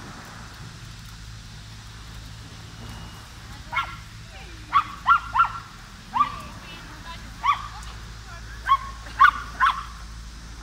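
A small dog barking in short, sharp yaps, about nine in all, starting about four seconds in, some coming in quick runs of two or three.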